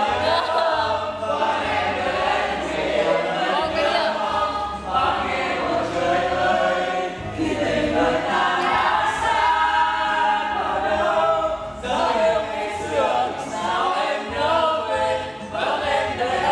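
A group of people singing a song together, many voices at once, over a low accompaniment whose notes change every couple of seconds.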